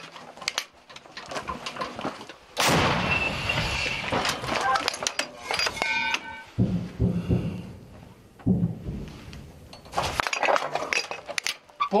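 Gun crew working an M119 105 mm towed howitzer: metallic clanks and clatter at the breech, with a sudden loud burst of noise about two and a half seconds in that carries on for several seconds. Another loud burst comes near ten seconds.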